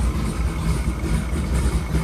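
Skip White 551-horsepower stroker small-block Chevrolet V8 idling steadily on its first start-up.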